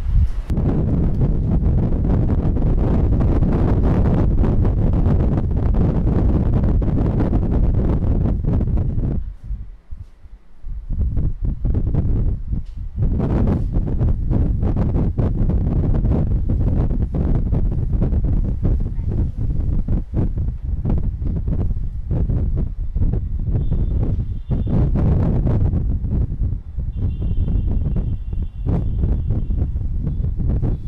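Steady rumbling, rustling noise on the microphone, heavy in the low range. It drops out briefly about ten seconds in, then returns.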